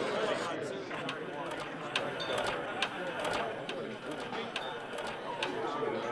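Crowd chatter with a jukebox's record-changing mechanism clicking several times as it selects and loads a record.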